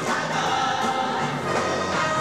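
Mixed-voice show choir singing together, with instrumental accompaniment.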